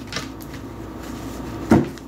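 Deck of tarot cards being shuffled by hand: a few soft card clicks, then one sharp knock a little before the end.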